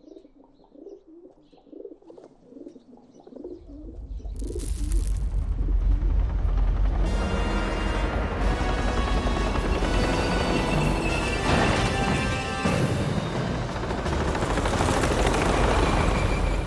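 Pigeons cooing for the first few seconds, then the deep rumble of a cartoon tank's engine coming in about four seconds in and staying loud, with dramatic background music building over it.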